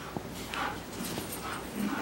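A police dog whining faintly, a few short high-pitched calls.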